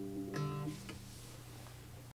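Gibson K-1 mandocello ending a solo piece: the held chord rings out and fades, a single low note is plucked about a third of a second in and damped almost at once, then a faint click.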